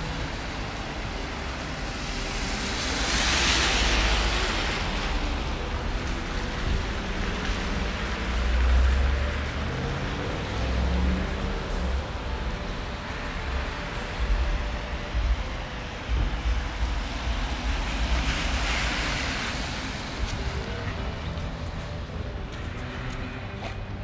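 Cars passing on wet pavement: the tyre hiss swells and fades twice, over a steady rumble of wind on the microphone.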